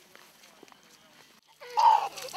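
Near quiet, then about one and a half seconds in a small child starts crying loudly, a high wavering wail, while water is poured over him to wash him.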